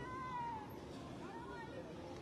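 Faint animal calls: a few short, thin tones that glide down in pitch, over steady street background noise.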